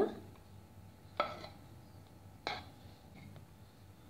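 Wooden spatula turning cooked rice in a metal pot, knocking sharply against the pot twice, about a second apart, with soft stirring in between.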